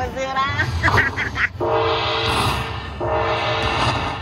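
Dragon Link slot machine's win-tally sound as the bonus prize counts up. After some gliding, rising tones in the first second and a half, a looping jingle repeats in phrases about a second and a half long.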